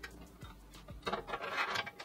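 A few faint light ticks and a brief rubbing from a hand touching the sheet-steel inside of a PC case's power-supply bay.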